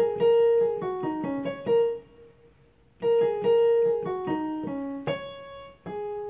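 Digital keyboard on a piano voice playing a single-note right-hand melody in F-sharp major: two phrases that step down from A♯ through G♯, F♯, D♯ and C♯, with a pause of about a second between them and a held note near the end.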